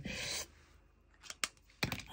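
A brief soft rush of noise, then a few faint sharp clicks and taps as a hand handles a diamond-painting canvas with a drill pen.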